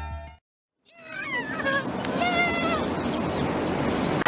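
Background music cuts off about half a second in; after a brief silence, outdoor roadside noise comes in with high-pitched voices calling out in gliding, falling tones.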